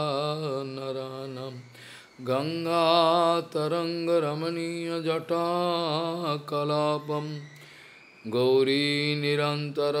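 A man's voice chanting Sanskrit prayer verses in long, held melodic phrases, with a short break about two seconds in and another near eight seconds.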